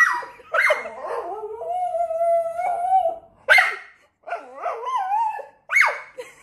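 Staffordshire bull terrier vocalizing excitedly: a few sharp barks and yips, with a long, steady howl held for over a second about one and a half seconds in. She is excited at being offered a walk.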